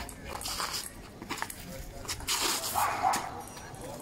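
Table-tennis ball clicking off bats and a concrete table in a quick rally. A louder short call breaks in about two and a half seconds in.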